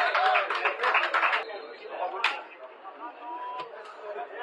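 A man's voice talking for the first second and a half, then a single sharp knock a little over two seconds in, followed by quieter open-air background.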